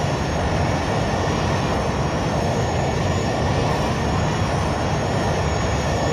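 Jet airliner engine noise: a steady deep rumble with a thin, wavering high whine on top.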